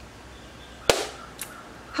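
A single sharp hand clap about a second in, then a faint tick half a second later, against quiet room tone.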